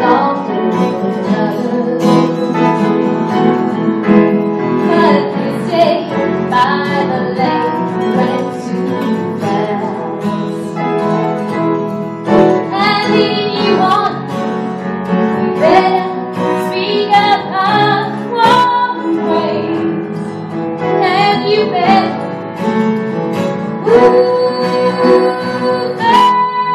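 A woman singing a song live at a microphone, accompanied by guitar. Near the end she holds one long, steady note.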